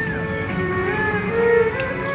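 Erhu playing a slow melody, its bowed notes sliding up and down between pitches, swelling louder about one and a half seconds in.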